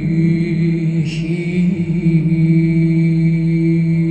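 Byzantine chant of a koinonikon: a held low drone (ison) under a slow, sustained melodic line. A brief hiss sounds about a second in.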